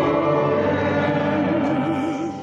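Church music: singing over steady accompaniment, with a wavering vibrato on a held note from about one and a half seconds in.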